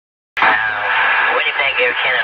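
Air traffic control radio channel opening with a sudden burst of narrow-band hiss about a third of a second in, and a voice starting to come through the static near the end.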